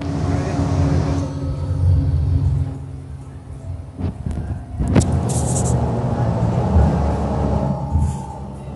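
City bus engine and road rumble heard from inside the passenger cabin, steady and low. About five seconds in there is a sharp knock, then a brief high hiss.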